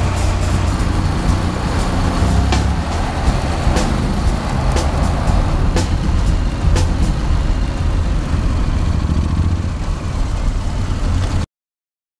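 Honda NC750D Integra maxi-scooter running on the road, mixed with background music. Everything cuts off suddenly near the end.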